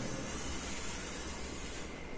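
Steady hiss as chalk is drawn slowly across a blackboard, tracing a curve.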